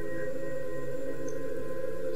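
Background music: a quiet, steady ambient drone of low held tones with a few thin higher tones, unchanging throughout.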